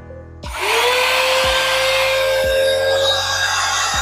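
Cordless handheld mini vacuum switched on for the first time, run without its dust cup fitted: the motor spins up quickly to a steady high-pitched whine with rushing air, then cuts off near the end.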